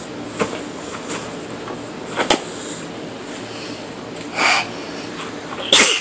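A few light clicks and taps of cardboard puzzle pieces being handled, then a short breathy sound and a loud, sudden sneeze near the end.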